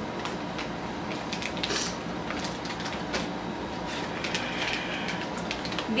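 Steady low room hum with a faint steady tone, broken by a few soft crackles and clicks.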